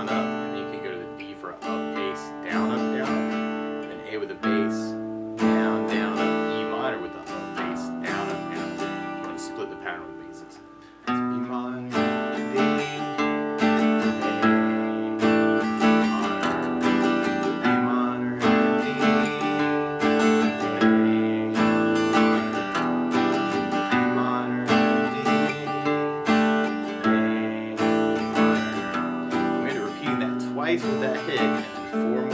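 Acoustic guitar strummed through a chord progression (Bm, D, A, E minor). About five seconds in, one chord is left to ring and fades for several seconds, then steady rhythmic strumming picks up again about eleven seconds in.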